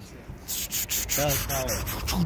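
Irregular rubbing and scraping noise close to the microphone, starting about half a second in, with a short vocal sound a little past a second in.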